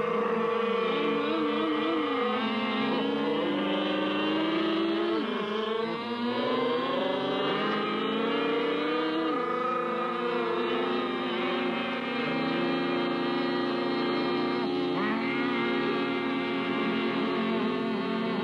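Lorry engine pulling along, its pitch climbing and then dropping back several times as it changes gear.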